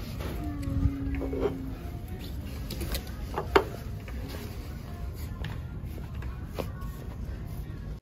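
A few sharp knocks and clicks of ceramic pieces being picked up and set down on a wooden counter, the loudest about three and a half seconds in.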